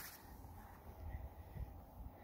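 Quiet outdoor background: a faint low rumble, slightly stronger in the middle, with a few faint short high tones.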